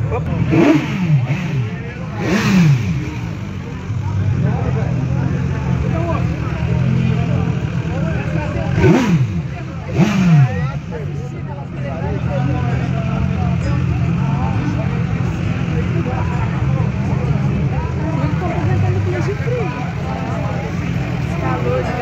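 Motorcycle engines idling, with four quick throttle blips that rise and fall in pitch: two in the first few seconds and two more about nine and ten seconds in. Crowd chatter underneath.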